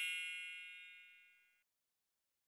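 The tail of a bright metallic ding, a chime sound effect, ringing out and fading away, gone a little over a second in.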